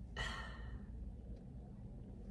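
A person sighs: one breathy exhale, starting just after the start and lasting under a second, over a faint steady low hum.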